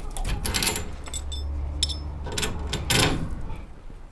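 Irregular small metallic clicks and clinks as a steel mounting bracket and its bolts are handled and set against a metal greenhouse door frame.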